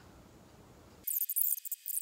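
Thin plastic protective wrap crinkling as it is pulled off an action figure: a rapid, high, papery crackle that starts about a second in.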